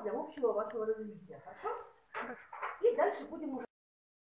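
Speech only: a lecturer talking in Russian, cut off abruptly near the end.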